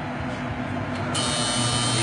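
Steady low machine hum from the kitchen equipment. A little over a second in, a high hiss with a thin steady whine switches on suddenly and carries on.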